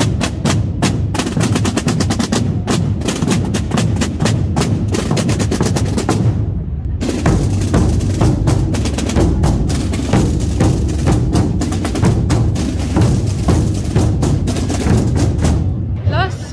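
A Holy Week procession drum band of snare drums and large rope-tensioned bass drums beats a loud march together with rapid rolls. The beat breaks off briefly about six seconds in, resumes, and stops just before the end.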